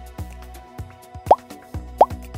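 Background music with a steady beat, and a short, rising cartoon-style 'plop' sound effect twice, about a second and a half in and again at the very end.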